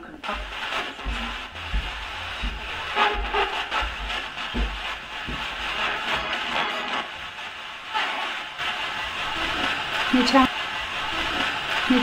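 Handheld Roberts radio used as a spirit box, giving off continuous static broken by short snatches of broadcast voices and music.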